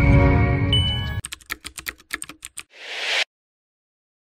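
Promo sound effects: a short music sting with a bright ding, then a quick run of clicks like keyboard typing, then a brief rising whoosh that cuts off suddenly.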